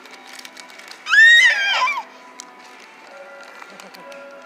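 A baby squealing once, a high-pitched call about a second long that rises and then falls, over faint steady background music.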